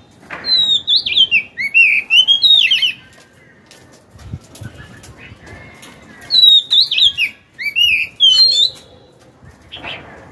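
Oriental magpie-robin (chòe than) singing: two phrases of fast, sliding whistled notes rising and falling in pitch, the first starting about half a second in and the second about six seconds in.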